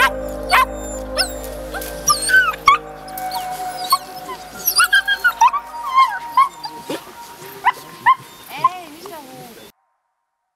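A litter of puppies whining and yipping: many short, high whimpers that rise and fall in pitch, overlapping one another, until the sound cuts off suddenly near the end.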